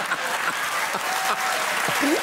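Audience applauding, with men laughing over it.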